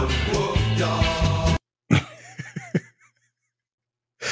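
An AI-generated playful pop song with a male lead vocal plays and cuts off suddenly about a second and a half in, as playback is paused. A man's short laugh follows.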